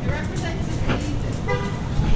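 Street sounds while walking: low wind rumble on the microphone and voices, with a short pitched toot about one and a half seconds in.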